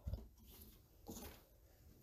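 Faint rotary cutter blade slicing through fabric along a ruler edge onto a cutting mat, a short scrape about a second in.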